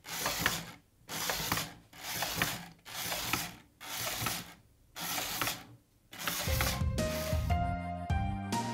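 Battery-operated toy rickshaw's small motor and gear train whirring and clicking in pulses about once a second as the puller's legs step, moving the toy very slowly. Music comes in near the end.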